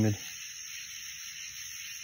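Steady, high-pitched chorus of night insects, an even hiss with no breaks.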